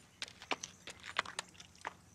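A horse's hooves knocking on hard ground: a dozen or so faint, sharp clops at an uneven pace.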